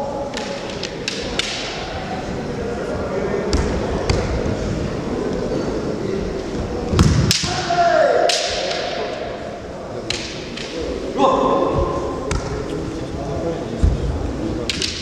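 Kendo sparring: bamboo shinai clacking against each other and against armour, heavy stamps on the floor, and drawn-out kiai shouts from the fighters. The loudest moment is a stamp and strike about seven seconds in with a long shout falling in pitch, and another shout follows a few seconds later.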